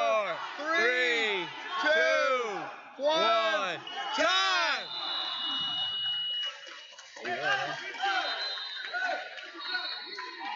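Loud shouting from coaches and spectators: long yells that rise and fall in pitch, about one a second. About four seconds in, a steady high electronic buzzer tone sounds for a couple of seconds as the match clock runs out, ending the period.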